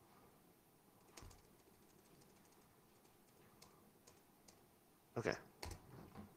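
A few faint, scattered laptop key taps against near silence, the speaker paging through presentation slides.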